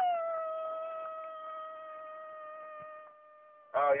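A person holds one steady vocal tone for about three seconds. It fades gradually, imitating the beeping ringing in her ear.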